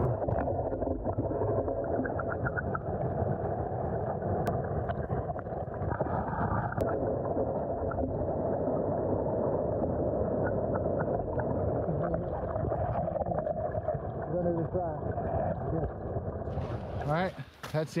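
Stream water rushing, heard through an underwater camera: a steady, muffled, dull wash with no high sounds. Near the end the muffling lifts.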